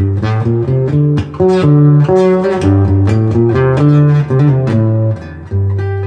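Solo acoustic guitar playing an instrumental introduction: a melody of single plucked notes over a moving bass line.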